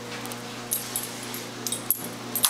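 A dog's collar tags clinking in a few short, bright jingles as the dog moves and plays with a toy on the carpet.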